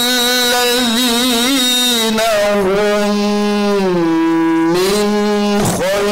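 A man reciting the Qur'an in the melodic tilawah style, sung through a microphone. He holds one long ornamented note with wavering melisma, which sinks lower around the middle and climbs back, then breaks off briefly just before the end.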